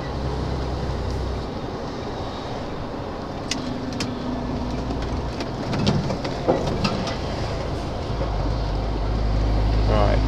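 Articulated lorry's diesel engine running, heard from inside the cab with road noise, a few scattered clicks and knocks, and the engine growing louder about eight seconds in.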